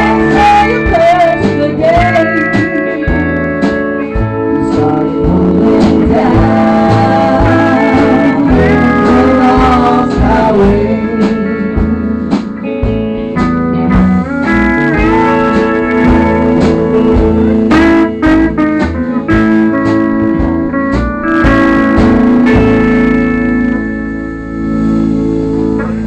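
Country band playing an instrumental passage, a pedal steel guitar leading with gliding, wavering notes over electric guitar, bass and drums. Near the end the band settles on a long held chord that rings out.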